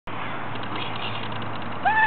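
A Newfoundland dog gives one short, high whine that rises and falls, near the end, over a steady background hiss.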